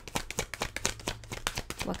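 A Rider-Waite tarot deck being shuffled by hand: a quick, uneven run of small card clicks.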